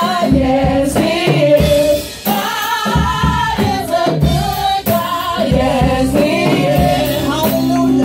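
Gospel song sung by a group of women together through handheld microphones.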